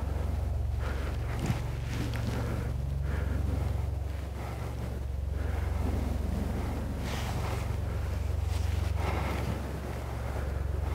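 Wind on the microphone: a steady low rumble, with a single sharp click about a second and a half in.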